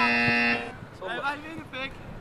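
A buzzer-like horn tone holding one flat pitch, cutting off suddenly about half a second in, followed by short voices.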